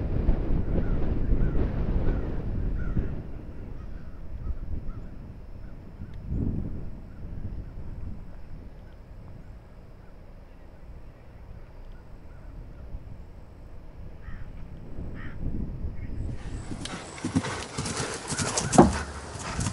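Wind rumbling on the microphone for the first few seconds, then, near the end, the hoofbeats of a horse cantering on grass close by: a quick run of thuds.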